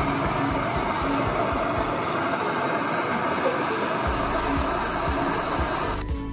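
Hand-held butane cartridge torch burning with a steady hiss while heating a copper refrigerant pipe joint for brazing, over background music.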